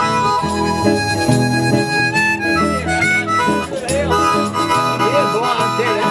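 Live band playing an instrumental break between verses of a country song: a harmonica lead with held and bending notes over guitar and bass.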